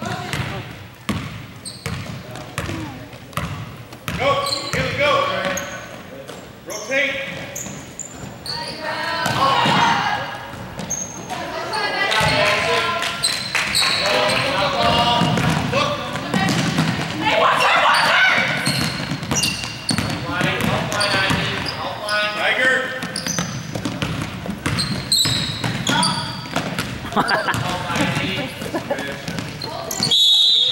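A basketball bouncing on a hardwood gym floor during play, under continuous shouting and talking from players and spectators, echoing in a large gym.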